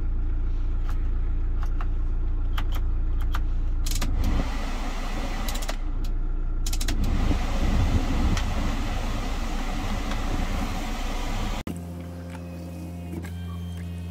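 Kia Bongo 3 truck idling, heard inside the cab as a steady low hum, while dashboard buttons on the audio unit and the climate controls click several times. From about four seconds in, the cabin blower fan rushes over the idle. It cuts off abruptly near the end, leaving a quieter, steady idle hum.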